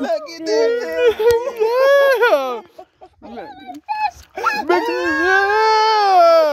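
High-pitched, wordless squealing of excitement from a person's voice: two long held cries that swoop up and down, with a short break about halfway through.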